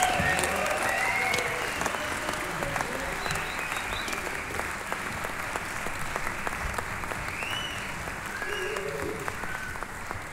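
Audience applauding and cheering after a live piece, with a few shouts and whoops, slowly dying down.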